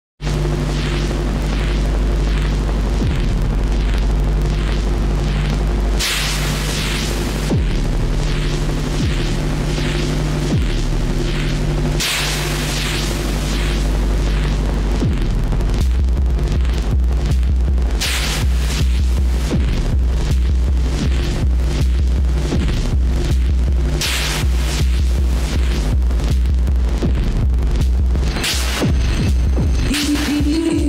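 Slow downtempo electronic music played on an analog modular synthesizer rig: a sustained low bass drone with a steady pulse, and a short burst of hiss every six seconds. About halfway through the bass drops lower and gets stronger.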